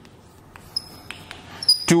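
Chalk writing on a blackboard: a run of light, sharp taps and scratches, with a couple of brief high squeaks.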